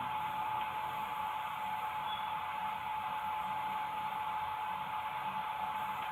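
Steady, even hiss with a thin constant tone underneath it, and no distinct events.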